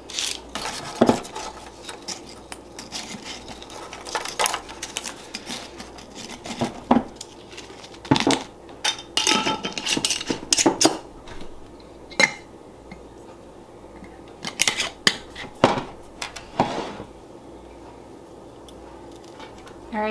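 Crisp freeze-dried mango slices being picked off a metal sheet pan and dropped into a glass mason jar: scattered light clicks, rattles and the odd sharper knock of pieces and fingers against glass and metal, thinning out near the end.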